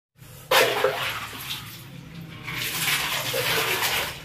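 Water poured from a plastic dipper over a person's back into a tub of ice water, splashing. A sudden pour about half a second in, then a second, longer pour from about halfway.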